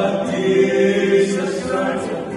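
Male vocal group singing a gospel hymn together in harmony, holding long notes.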